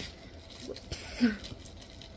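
A woman's brief non-speech vocal sound, a short breathy noise about a second in.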